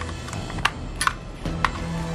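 A plastic battery-compartment cover clicking into place on a toy transformation device: three short, sharp plastic clicks over about a second.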